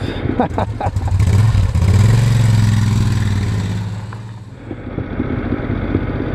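Moto Guzzi V-twin motorcycle engine pulling up through the revs about a second in, holding strong for a moment, then easing off and falling away a little past the middle. Wind rushes over the helmet-camera microphone.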